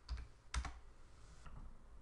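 Computer keyboard keys being pressed while a number is typed into a field: a sharp key click near the start and another about half a second in, then a few fainter taps.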